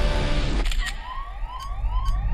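Loud music cuts off just over half a second in. Then a smartphone sounds an alert of short rising chirps, about three a second.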